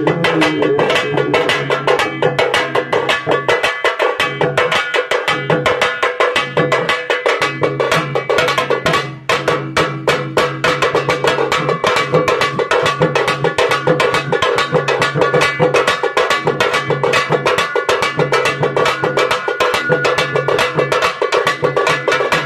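Live folk drumming: a hand-held frame drum beaten with a stick and a rope-laced barrel drum, playing a fast, steady rhythm over a sustained melody. The sound drops out briefly about nine seconds in.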